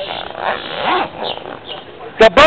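Outdoor background noise in a pause between shouted phrases, with a faint voice about a second in.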